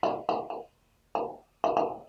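A man's voice in five short, low murmured syllables with pauses between them, quieter than normal speech.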